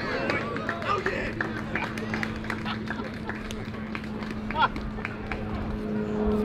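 Voices shouting and calling out across a baseball field, with scattered sharp clicks and a steady low hum underneath.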